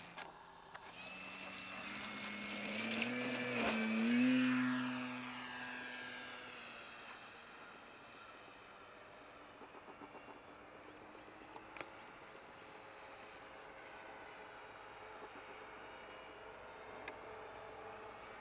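Radio-controlled model airplane taking off: its motor and propeller climb in pitch as the throttle opens, are loudest about four seconds in, then fade and fall in pitch as the plane flies away, leaving a faint distant hum.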